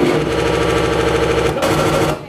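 Loud electronic breakcore noise: a dense, buzzing, pitched drone chopped into a very fast, even stutter, which shifts about a second and a half in.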